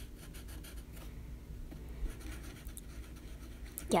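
Sharpie felt-tip marker rubbing on a yellow legal pad in rapid short back-and-forth strokes as it fills in a shape. The strokes come thickest in the first second, then sparser and fainter.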